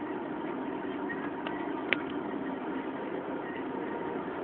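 Steady road and engine noise of a car driving, heard from inside the cabin, with a single sharp click about two seconds in.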